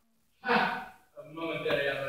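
Stage actors speaking dialogue, heard from the audience seats. A short pause, a brief loud utterance about half a second in, then more talk from just after a second in.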